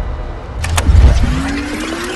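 Film sound design: a deep rumble swelling to about a second in, with two sharp clicks, then a rising whine as the picture breaks into a videotape-rewind glitch.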